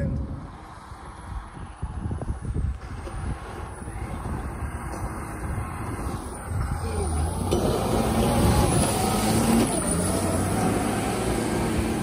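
An LMTV military truck's diesel engine pulling the truck through deep snow, over a steady rushing hiss. The engine grows louder about halfway through as it works harder.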